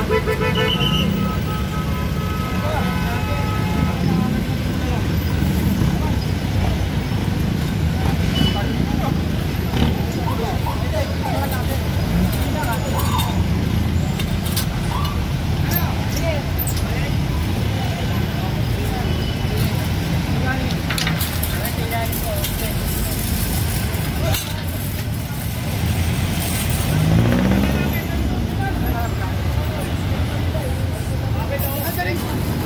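Busy street traffic running steadily, with a vehicle horn sounding briefly near the start and voices in the background. Scattered clanks and knocks come from a metal-grid vendor stall being pried apart with iron bars.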